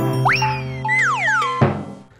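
Cartoon title-card music: a held chord with springy 'boing' sliding sound effects, one quick upward slide about a quarter second in and a few downward slides around a second in, fading out near the end.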